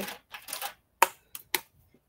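Dry-erase marker working on a small whiteboard: a short scratchy stroke, then three sharp clicks about a second in, close together.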